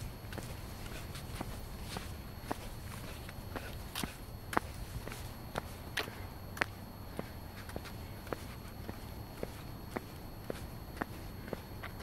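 Footsteps of a person walking on asphalt at an even pace, about two steps a second, one of them louder about four and a half seconds in.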